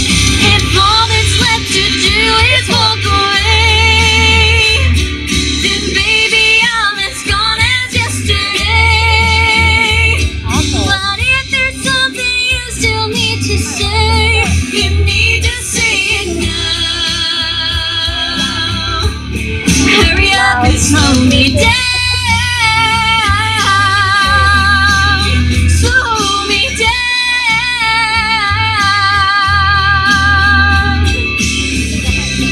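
Woman singing a country-pop song live into a microphone, holding long notes with vibrato, over instrumental backing music with a steady bass pulse.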